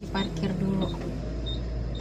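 Steady low rumble of a car's engine and road noise heard inside the cabin while driving, with a short stretch of a voice in the first second.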